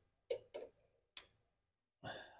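Three light, short clicks of the choke linkage on a Honda GCV160 carburetor being worked loose by hand, the last one the sharpest.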